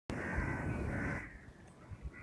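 A bird calling in the background for about the first second, then faint room tone.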